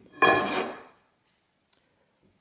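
Square aluminium tube set down on a wooden workbench: one sharp metallic clank about a fifth of a second in, ringing briefly and dying away within about a second.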